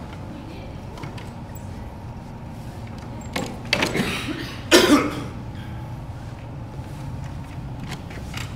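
A person coughing, twice, around the middle, over a steady low hum.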